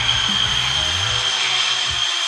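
Background music with shifting low notes over a steady high-pitched whine and hiss.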